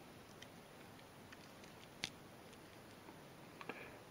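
Near silence with a few faint ticks, then one short, sharp click about two seconds in, as the bottle-opener blade of a Swiss Army knife is pried out with a thumbnail and snaps open against its spring.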